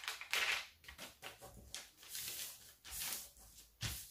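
Brown pattern paper rustling and crinkling in a series of short bursts as it is folded over by hand and pressed flat along the crease.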